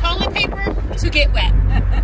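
Women's voices talking in a moving car's cabin, over the car's steady low road and engine rumble.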